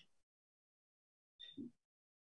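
Near silence on a video call, broken by one short faint sound about one and a half seconds in.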